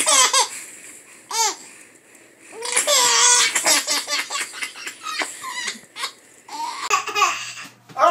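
Babies laughing in short repeated bursts, with a longer, louder laugh about three seconds in.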